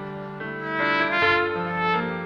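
Trumpet playing the slow, sustained melody of a bolero, held notes moving in pitch and swelling louder about a second in.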